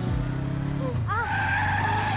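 Motorcycle engine humming steadily, then from about a second in a long, squealing tyre skid as the bike slides out.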